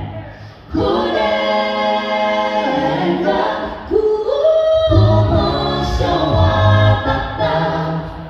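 Mixed men's and women's a cappella group singing a Shona gospel song in close harmony on held chords, through a stage PA. The voices drop out briefly right at the start and come back in on a sustained chord; a voice slides upward about four seconds in, and a low bass part enters a moment later.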